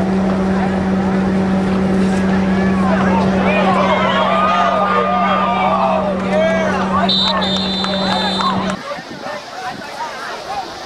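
Game sound from a high school football field: shouting from crowd and players rises and falls over a steady electrical hum. A referee's whistle blows for about a second and a half as the play ends in a tackle, then the sound cuts to quieter field noise.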